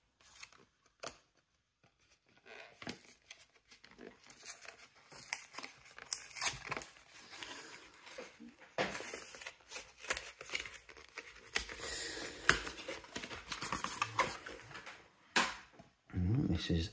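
Packaging of a Topps Match Attax Euro 2024 booster tin being torn and crinkled open by hand: irregular tearing and crackling rustles that start a couple of seconds in and go on and off until just before the end.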